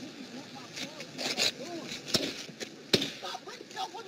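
Faint, indistinct voices in a played recording of a police traffic stop, between the officer's shouted commands, with two sharp knocks about two and three seconds in.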